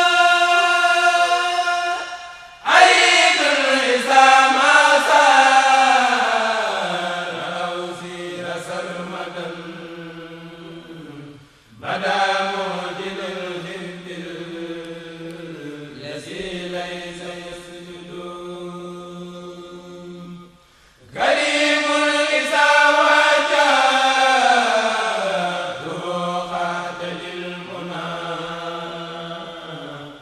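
Male voices of a Mouride kourel chanting an Arabic devotional poem (xassida) a cappella. Each long melismatic phrase starts loud and high, winds downward and settles on a low held note; new phrases begin about 3, 12 and 21 seconds in.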